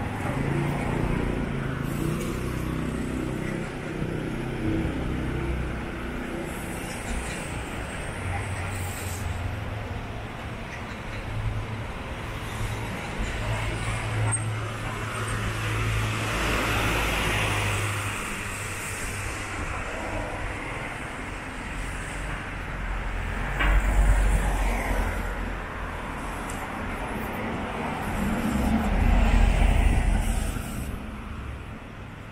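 City street traffic: vehicle engines running low and steady, with cars passing by and two louder passes near the end.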